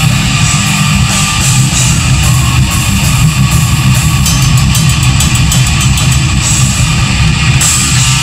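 Heavy metal band playing live: distorted electric guitars, bass and a drum kit, loud and continuous, with a run of rapid drum and cymbal strikes in the middle.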